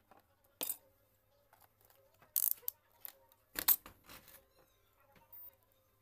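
Small hard tools and parts being handled and set down on a wooden workbench: a handful of sharp clicks and clatters, the loudest about two and a half and three and a half seconds in.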